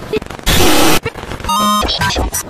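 Harsh, loud blast of distorted noise lasting about half a second, followed near the end by a short, buzzy electronic tone, chopped together in rapid edits.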